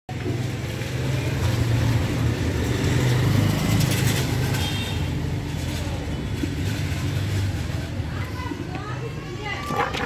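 Road traffic noise: a steady low engine rumble, with voices in the background.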